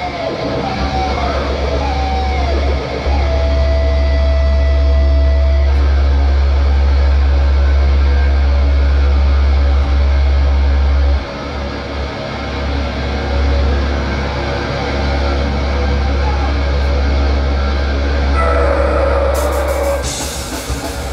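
Heavy metal band's bass and guitar amps ringing out a loud, sustained low drone through the club PA between songs. A held higher guitar note sounds for the first few seconds. The drone dips briefly about three seconds in and again about halfway through.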